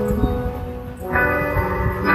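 Instrumental karaoke backing music with steady held chords and bell-like tones. The chord thins out, and a new chord comes in about a second in.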